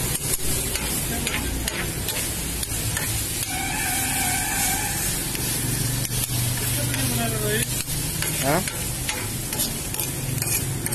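Food sizzling in oil on a hot steel flat-top griddle while a metal ladle and tongs stir and toss it, with frequent scrapes and clicks of the utensils against the plate.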